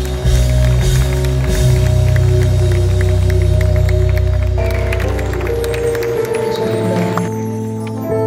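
Live band playing an instrumental passage: a deep, sustained bass chord with a fast, even ticking rhythm over it, about five ticks a second. About five seconds in, the low chord fades and held higher notes take over.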